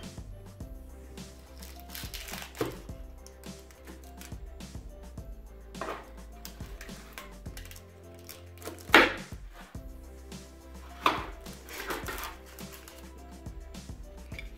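A knife cutting through baked puff-pastry apple cake in a metal baking tray: a handful of short crunching and knocking strokes, the sharpest about nine seconds in. Background music plays throughout.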